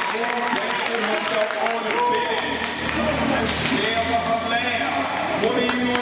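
Basketball game sounds in a gym: overlapping shouts and talk from players and spectators, with the sharp knocks of a ball bouncing on the court scattered throughout.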